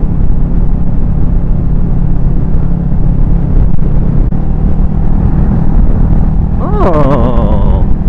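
Motorcycle engine running at a steady cruise, with wind and road rumble heard through a helmet-mounted camera. About halfway through, the engine note shifts slightly.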